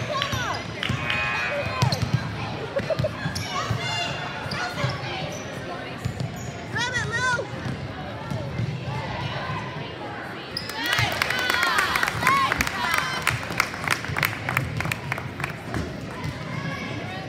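Basketball bouncing on a hardwood gym floor during play, with voices echoing in the hall; from about eleven seconds in, a dense stretch of rapid sharp knocks.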